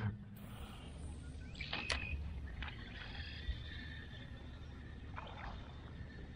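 Quiet open-water ambience: faint water trickling and lapping against a kayak hull over a low steady rumble, with a single short click about two seconds in.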